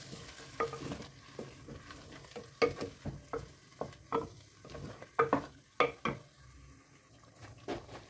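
A black spatula stirring chicken, yogurt and masala in a clay handi: irregular scraping knocks against the earthenware pot, thickest in the middle and thinning out near the end, over a faint sizzle of the frying mixture.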